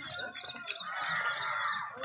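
A small bird chirping over and over, about three short high chirps a second, over a murmur of voices that grows louder in the second half.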